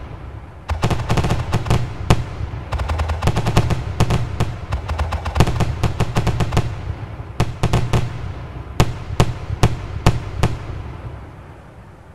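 Aerial fireworks shells bursting in a dense rapid volley over a low rumble, then a handful of separate bangs, the sound fading away near the end.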